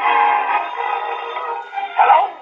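A 78 rpm shellac record of an orchestra playing, reproduced on a hand-cranked acoustic cabinet phonograph. The sound is thin and boxy, with no deep bass and no top.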